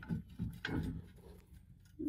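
A few faint clicks and knocks in the first second as a steel helper spring and its bracket are handled against a truck's leaf spring pack, then near quiet.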